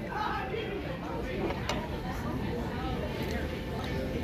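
Murmur of diners' voices chattering in a busy restaurant room, with one light click partway through.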